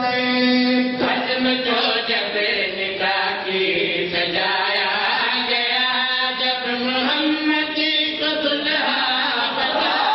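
A man's voice chanting a religious recitation (a zakir's sung delivery) in long held notes that rise and fall.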